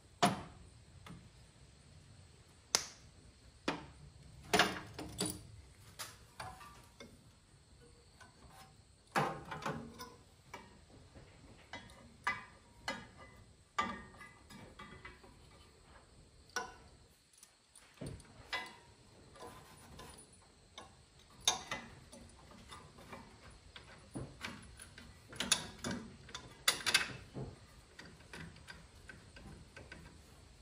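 Irregular clicks, taps and light metal clatter of hand tools and small steel parts being handled during reassembly work on a tractor engine.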